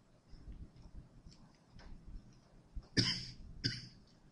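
A person coughing twice in quick succession about three seconds in, the first cough the louder and longer.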